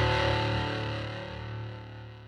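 Music: a distorted electric guitar chord left ringing and fading away.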